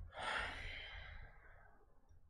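A man sighing: one long breath out that swells quickly and fades away over about a second and a half.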